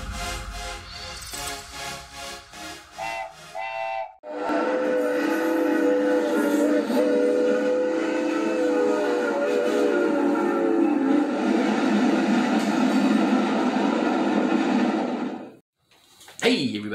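Intro music with short pitched notes for about four seconds. Then a steam-train sound effect: a long whistle-like chord of steady tones held over rushing noise for about eleven seconds, cutting off just before the end.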